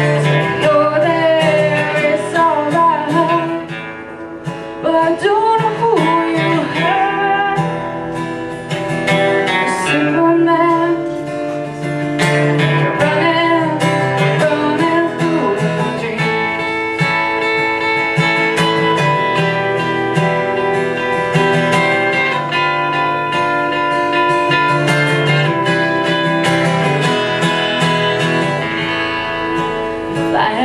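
Two acoustic guitars playing a song together, with a woman singing over them; the voice is most prominent in the first part and again near the end.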